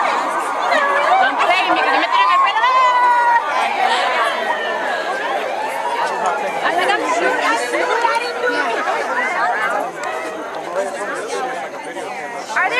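A crowd of people talking and calling out over one another, many voices at once, with a few higher-pitched shouts about three seconds in.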